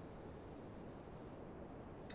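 Near silence: a faint steady hiss of room tone, with no distinct sound events.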